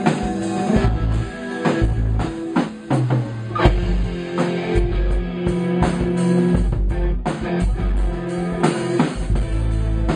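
Stratocaster-style electric guitar played through an amplifier with drums, loud rock music with held notes over a steady drum beat.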